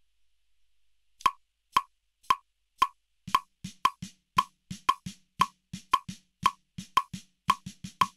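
A steady sharp click about twice a second comes in a little over a second in. From about three seconds in, a snare drum struck with wooden sticks joins it, playing triplet strokes between and on the clicks.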